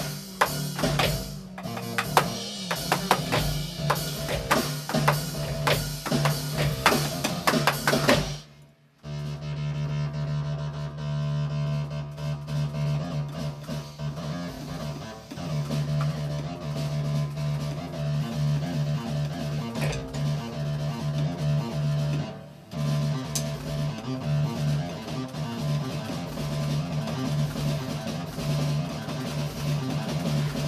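Electronic drum kit played solo, its pads triggering synthesizer sounds. A fast run of hits fills the first eight seconds, then breaks off abruptly. After that a steady low synth tone holds, with sparser hits over it.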